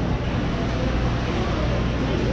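Steady background noise of a mall food court: a constant low hum under a broad roar, with a faint murmur of voices.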